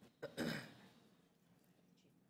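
A person clearing their throat once: a brief click, then a short rasping burst about half a second in.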